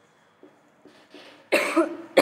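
A woman coughs once, a sudden loud burst about one and a half seconds in. Before it, faint short taps of a marker writing on a whiteboard.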